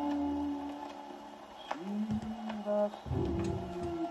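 An Orthophonic Victrola acoustic gramophone playing a 1927 Victor 78 rpm record. Held instrumental notes fade to a quieter moment, and new notes enter about two seconds in and again a second later. Light ticks of record-surface noise sound through it.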